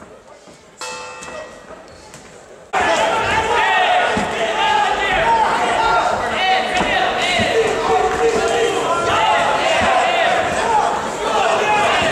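A round-end signal in a kickboxing ring: a steady pitched tone held for about two seconds. After a sudden jump in level, many voices talk over one another, echoing in a large hall.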